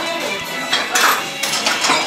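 Several light clinks of chopsticks and dishes, the chopsticks knocking against a small ceramic plate as noodles are picked up.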